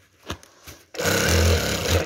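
A sewing machine starts about a second in and runs steadily for about a second with a low hum, stitching curtain heading tape onto a curtain, then stops abruptly. A couple of light ticks come before it.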